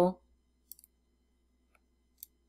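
Computer mouse clicking faintly: a quick double click about three-quarters of a second in, then a fainter single click near the end, over a low steady hum.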